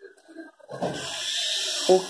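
Sewing thread being drawn through grosgrain ribbon behind a needle: a steady hiss lasting about a second, starting just under a second in.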